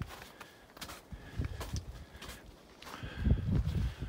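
Hiking footsteps crunching through thin snow on a rocky trail, the boots fitted with Yaktrax rubber traction cleats; a string of uneven steps, with a louder low rumble near the end.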